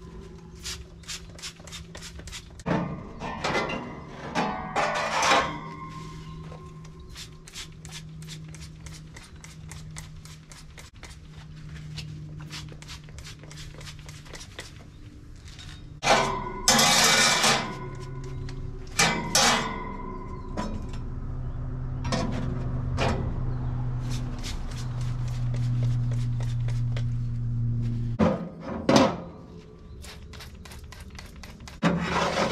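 Background music with a steady beat, over metal clanks of steel baffle plates and grates being set back into an offset smoker and hissing spritzes from a pump spray bottle of vegetable oil.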